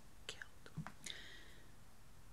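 A quiet pause in a woman's speech, holding a few faint mouth clicks followed by a soft breath a little after a second in.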